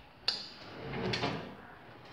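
A single sharp click about a quarter of a second in, followed by soft rustling or shuffling.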